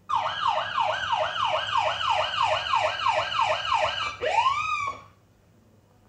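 Police siren sound effect: a fast falling yelp repeating about two and a half times a second, then one rising and falling wail, which cuts off about five seconds in.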